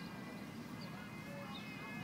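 Mallard ducklings peeping, a few faint, short high calls, over a steady low background rumble.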